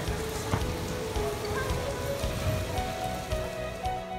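Indoor atrium waterfall splashing steadily, with faint music underneath.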